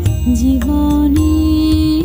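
A woman singing a song with instrumental backing: after a short bending phrase she holds one long note over a steady bass accompaniment.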